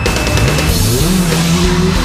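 A rally car's engine revs up on a dirt stage, its pitch rising for about half a second and then holding steady, heard under loud rock music.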